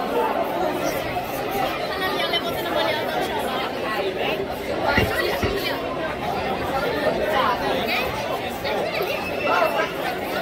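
Spectators chatting around the camera in the stand, several voices overlapping with no clear words. A couple of dull thumps about halfway through.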